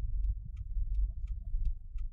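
Low, steady rumble of a car driving, heard from inside, with a light, regular tick about three times a second from the car's turn signal as it turns at a junction.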